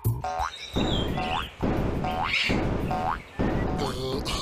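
Cartoon soundtrack: a short springy boing-like tone that rises in pitch, repeated every half second to a second, over music.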